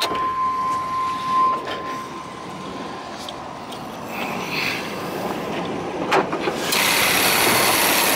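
The 1998 Chevrolet Tahoe's 5.7-litre V8 idling smoothly, with a steady high tone for the first second and a half. About six seconds in there is a knock, and then the engine's running sound becomes much louder and brighter as the hood is opened on the engine bay.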